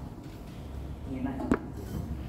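A single sharp knock about one and a half seconds in, over a steady low room hum, with a faint voice just before it.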